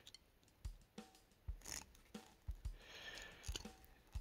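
Faint, scattered metal clicks and taps from crimping pliers working a small brass bullet connector onto a red wire, about half a dozen short ticks a second or less apart.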